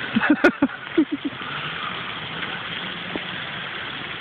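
Steady background noise, called too noisy, with a few short laugh-like vocal sounds and a sharp click in the first second or so.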